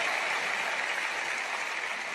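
Audience applauding steadily in a large hall, in answer to the preacher's "Amen?", easing off slightly near the end.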